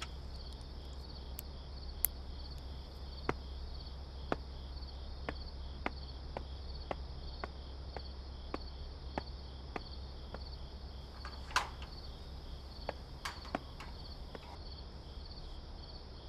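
Crickets chirping steadily over a low background hum, with light ticking steps about every half second and a couple of sharper clicks about two-thirds of the way through.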